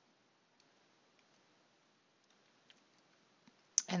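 Near silence with a few faint, sparse clicks. A sharper click comes just before a voice starts speaking at the very end.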